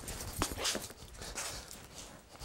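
Irregular footsteps and shoe scuffs of leather-soled shoes on a hard floor, in a staggering, uneven rhythm: a simulated ataxic gait while attempting to walk heel-to-toe.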